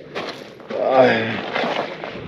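A man's drawn-out, slowly falling 'aah' of relief, the sigh that follows a drink of water.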